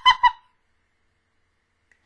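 The tail of a woman's high-pitched burst of laughter: quick, even 'ha' pulses, about six a second, that stop less than half a second in.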